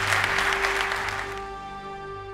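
Audience applause over instrumental outro music with long held notes. The applause stops about one and a half seconds in, leaving the music alone.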